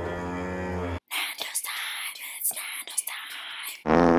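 TV-static glitch sound effect: a crackling hiss with sharp clicks for about three seconds, after a brief pitched sound in the first second.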